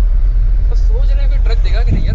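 Steady low rumble of a Mahindra pickup's engine and road noise heard inside the cab while driving at highway speed, with a man's voice speaking over it in the second half.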